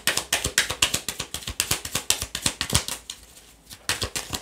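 A deck of oracle cards being hand-shuffled overhand: fast, crisp clicking of cards slapping together. It pauses briefly a little after three seconds in, then starts again.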